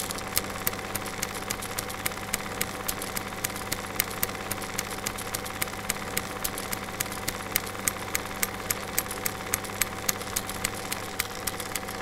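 Film projector running: a steady mechanical hum with sharp, evenly spaced clicks about three times a second.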